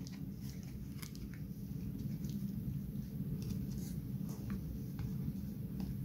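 Faint handling noise: a few soft clicks and rustles as fingers work thin insulated wires under a plastic cable tie, over a steady low room hum.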